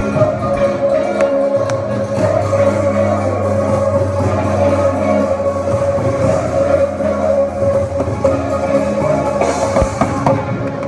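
Live band music through a hall's PA, with drums and guitar over a long held note.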